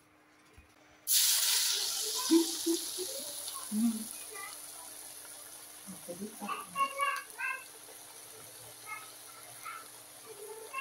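Parippuvada (lentil fritter) batter dropped into hot oil in an iron kadai. A loud sizzle starts suddenly about a second in and slowly dies down as the fritter fries.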